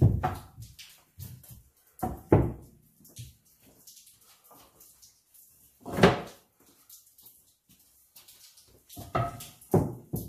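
2x4 lumber being set down and stacked on a wooden workbench during a dry fit: about six separate wooden knocks spread out, the loudest about two and a half and six seconds in, with two lighter ones near the end.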